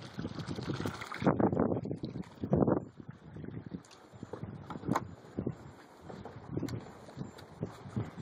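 Wind gusting against the microphone in irregular rumbling bursts, with a sharp click about five seconds in.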